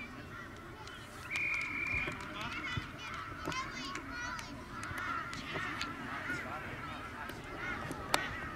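A referee's whistle blown once, a steady note of under a second, about a second in, followed by shrill shouting from children and spectators across the field.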